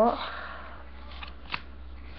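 Yu-Gi-Oh trading cards being handled and laid down on a table, with a couple of light taps a little after a second in.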